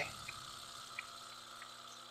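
Faint scratching of a fountain pen's nib writing on paper, with a few small ticks, over a low steady hum.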